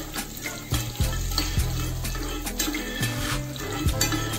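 Sliced onions frying in hot oil in a small pan, being stirred for a dal tempering, with background music playing under it.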